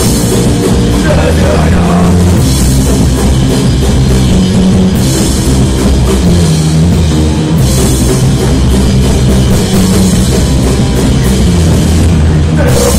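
Live rock band playing an instrumental passage: distorted electric guitars and a drum kit with cymbals, loud and dense, with no singing.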